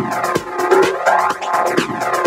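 Techno played in a DJ mix: a synthesizer line with repeating sweeps that curve up and down in pitch over a regular beat.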